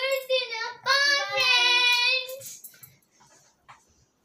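A child singing in a high voice, with one long held note for about a second and a half in the middle.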